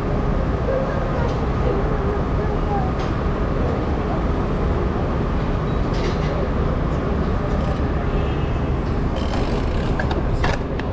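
Busy city street ambience at an intersection: a steady rumble of traffic with indistinct chatter from passing pedestrians, and a few sharp clicks near the end.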